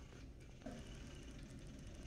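Quiet room tone with a low steady hum and a faint, rapid high ticking. A brief soft sound comes about two-thirds of a second in.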